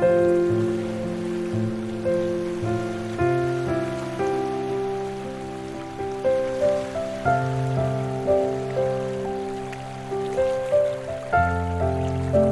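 Background music: slow, soft piano chords struck every second or two and left to ring and fade, over a faint steady hiss.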